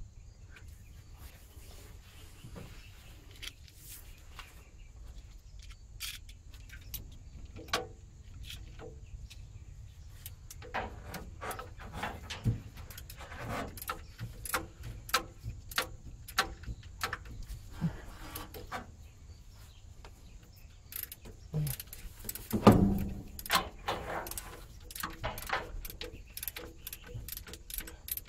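Irregular metallic clicks and clinks of hand tools against engine parts as bolts on the engine of a 1967 Ford F100 are worked with a wrench, with a louder knock near the end.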